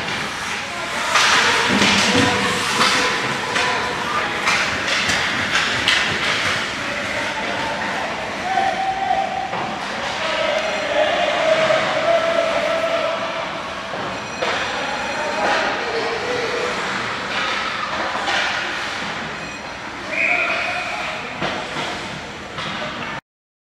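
Ice hockey game sounds in an indoor rink: skates scraping the ice, sticks and puck clacking and knocking against the boards, with shouting voices throughout and a brief whistle near the end as play stops.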